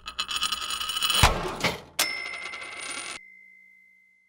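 Animated logo sound effect: a fast run of coin-like clinks, a sharp hit with a sweep about a second in, then a bright ding at two seconds whose single ringing tone fades out.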